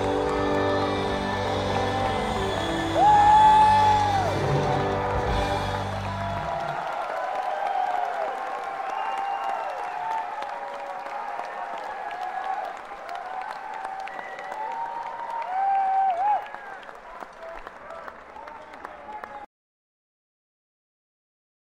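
Live rock band playing the final bars of a song, with the bass and full band stopping about six seconds in. Then the concert audience cheers, whoops and whistles, with a loud whistle near the end, before the recording cuts off suddenly.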